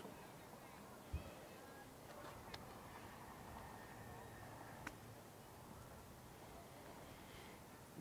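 Near silence: faint outdoor room tone, with a soft low thump about a second in and two faint ticks later.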